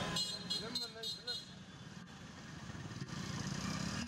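Roadside street ambience: traffic running on a nearby road, with faint background voices in the first second or so. The low engine hum swells again toward the end.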